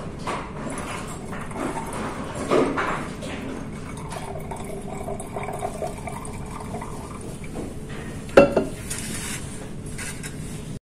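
Handling of a plastic graduated cylinder on a lab bench: light rubbing and knocks, with one sharp knock about eight seconds in, the loudest sound.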